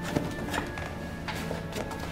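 Film score holding a low, steady drone, with a few irregular knocks and scuffs of someone moving on a wooden floor.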